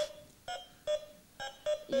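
Electronic wire-loop skill game beeping: about five short beeps of one steady pitch at irregular gaps, each one set off when the hand-held wand touches the track.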